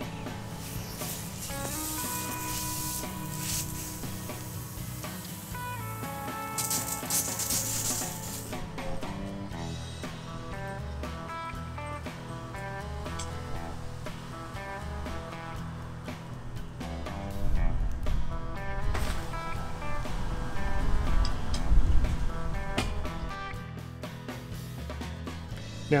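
Background music with a run of steady plucked notes. A hissing rush sits under it for the first several seconds, and low rumbling comes up in the second half.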